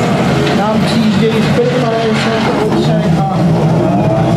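Škoda Fabia R5 rally car's turbocharged four-cylinder engine running at low revs as the car drives slowly up a ramp, with a voice talking over it.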